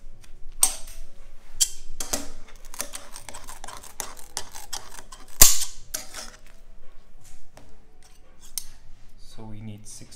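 Irregular clicks, taps and knocks from handling hot candy batches on a steel work table, with one sharp, loud knock a little past halfway.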